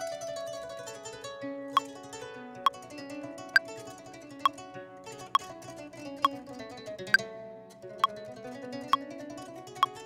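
A track's free-tempo string intro playing unwarped, with Ableton Live's metronome clicking at 67 BPM over it, about one click every 0.9 seconds from about two seconds in. The strings are not in rhythm and do not line up with the click.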